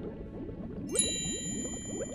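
Cartoon underwater bubbling effect of many quick, short rising blips, with a bright bell-like chime struck about a second in that rings on and fades slowly.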